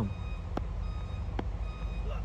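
A high electronic beep repeating on and off over a steady low rumble, with two light clicks.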